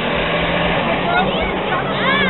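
Steady outdoor background noise with a low hum and faint, distant voices of people talking.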